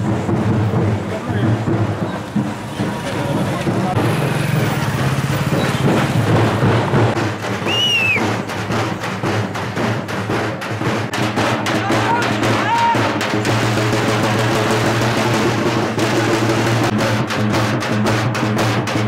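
Drums beating in a street procession, with many people's voices mixed in; the strokes come closer together over the last couple of seconds. A short high whistle-like tone rises and falls about eight seconds in.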